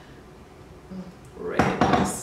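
Blender jar set back down onto its base with a clunk and a short scrape near the end, after a quiet stretch.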